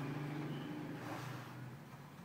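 A low, steady engine-like hum fading away. About a second in comes a brief scrape as the replacement keyboard is laid into the IBM ThinkPad T60's frame.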